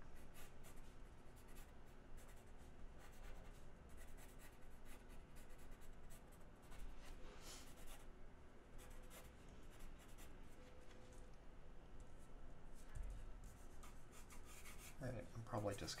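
Blue pencil scratching across illustration board in many short, quick sketching strokes, the light lead marks of a blue-line layout drawing.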